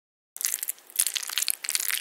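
Crackling, crunching sound effect: a dense run of many small sharp cracks that starts about a third of a second in and stops abruptly just after the end, going with the animated clump of foamy hair crackling away off the cartoon head.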